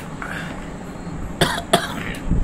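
A man coughing twice in quick succession, about a second and a half in.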